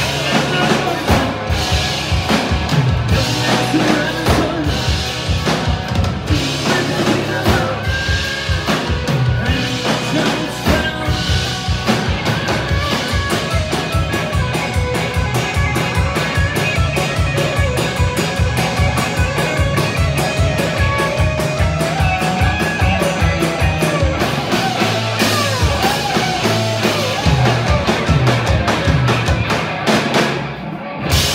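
Live rock band playing an instrumental break: electric guitar lead over bass guitar and a drum kit. The drums settle into a fast, even beat about twelve seconds in.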